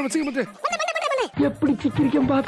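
A voice making wordless, wavering pitched calls in several short bursts.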